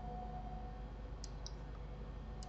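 Two quiet computer mouse clicks about a quarter second apart, over a faint steady hum.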